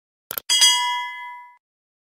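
A bell-like ding sound effect on an outro card: two quick clicks, then a bright metallic chime that rings with several pitches and fades out after about a second.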